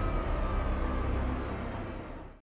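Emergency sirens sounding over the film's music score, growing steadily quieter.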